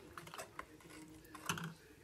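Faint, light clicking of a metal spoon against a glass bowl while stirring a liquid flan batter.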